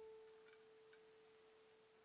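Faint, slowly fading tail of a single sustained keyboard note from the background music.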